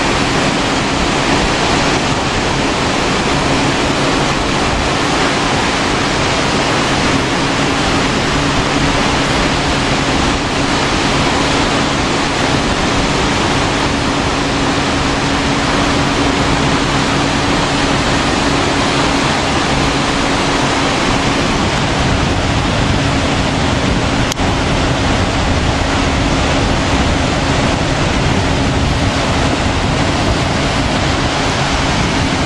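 Steady, loud rush of sea surf breaking and washing up a sandy beach, with a faint steady low hum underneath.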